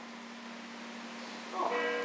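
Quiet room tone with a steady low hum. Near the end, a short bell-like tone of several steady pitches sounds.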